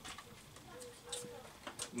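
A few faint clicks and taps of a hand tool on a Stihl 028 chainsaw as its loose spark plug is tightened.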